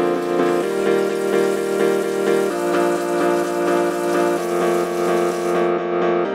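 Water running from a kitchen faucet into the sink as a steady rush, stopping shortly before the end, over background music with a repeating pulsing beat.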